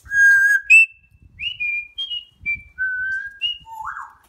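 African grey parrot whistling: one loud, held whistle at the start, then a string of short clear whistled notes at changing pitches like a little tune, ending on a low note that slides upward.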